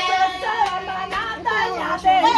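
A group of women singing together in high voices, with a few hand claps.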